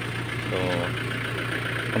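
Isuzu Bighorn's 4JG2 four-cylinder diesel engine idling with a steady low drone, running again after its injection pump was refitted.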